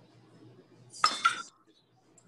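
A short metallic clink about a second in, from a utensil striking a small stainless steel mixing bowl, against a faint background.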